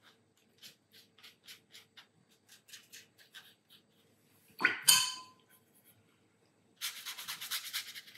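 Watercolour brush dabbing and stroking on mixed media paper: faint soft ticks, about three or four a second, a brief knock with a short ring about halfway through, then a second of quicker, louder brushing near the end.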